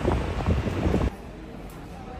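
Wind buffeting the microphone outdoors, a rough, uneven rumble that cuts off suddenly about a second in, leaving a much quieter, steady background.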